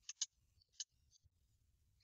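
Near silence: room tone with three faint clicks in the first second.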